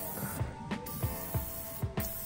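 Aerosol can of penetrating oil hissing as it sprays onto rusted suspension bolts, in two bursts with a short break about half a second in, to loosen them. Background music with a steady beat plays underneath.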